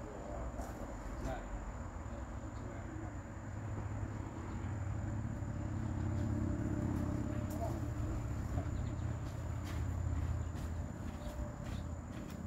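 A small engine-driven blower running with a steady low drone, pushing air through a long flexible duct. The drone grows louder about four to six seconds in.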